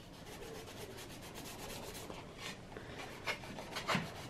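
Abrasive sanding block rubbed gently back and forth over a black plastic fuse box cover, scuffing (keying) the smooth surface for primer. Faint, quick scratchy strokes, with a couple of louder ones near the end.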